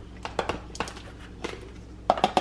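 Scattered light plastic clicks and knocks, about half a dozen, as the clear bowl of a Hamilton Beach food chopper is lifted off its motor base and handled.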